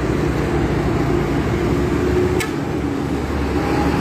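Steady road noise from riding a motorcycle in traffic: the engine's hum under a low rumble of tyres and passing vehicles, with one brief click about halfway through.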